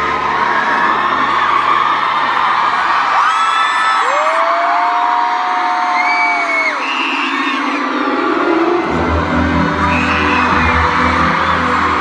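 Concert audience cheering and screaming, with several long high whoops held for a second or more. Low sustained keyboard notes fade away early and come back strongly about nine seconds in.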